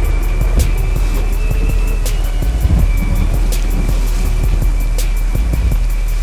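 Outro music with a deep, steady bass and a thin sustained high tone, with scattered sharp ticks over it.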